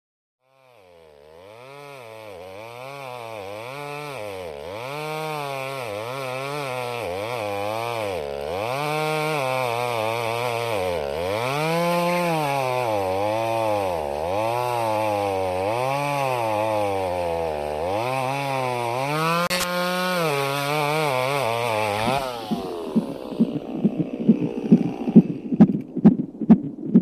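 A chainsaw engine revving up and down over and over, every second or two. It fades in and grows louder over the first ten seconds. Near the end it gives way to a regular pulsing beat.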